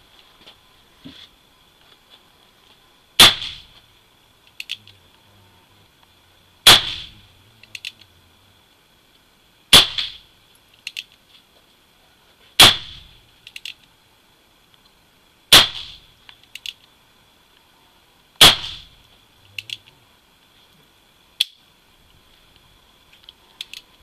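Colt 1860 Army .44 cap-and-ball revolver firing black-powder loads: six shots about three seconds apart, each with a short echo. Lighter clicks fall between the shots as the hammer is cocked and the cylinder turns to the next chamber.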